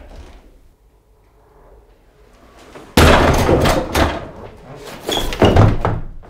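A door struck hard in a crash: a sudden loud bang about halfway through, hard enough to knock the door off its hinges, followed by rattling and clatter and another heavy thump near the end.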